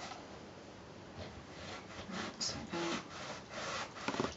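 Small iron sliding and rubbing over cotton patchwork pieces on a padded pressing board, with faint rustles and scrapes as the fabric is handled.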